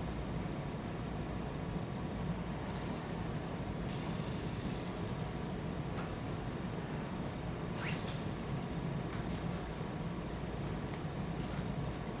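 Lead foil crinkling as it is rolled between the fingertips onto a hook, in four short crackly bursts over a steady low room hum.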